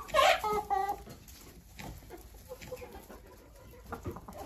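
Backyard hens squawking and clucking: a loud burst of short calls in the first second, then quieter.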